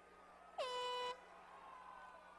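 End-of-round horn at an MMA bout: one short blast of about half a second. It drops sharply in pitch at the start, then holds one steady note, signalling the end of round one.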